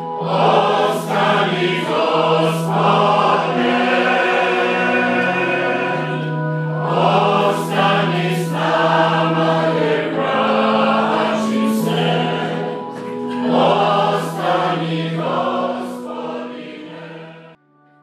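A church choir singing a Croatian hymn to organ accompaniment, with long notes held steady underneath the voices. The sound cuts off abruptly near the end.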